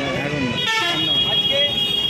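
Several people talking over each other around a flag-hoisting, and about two-thirds of a second in a vehicle horn sounds one steady high note that lasts past a second.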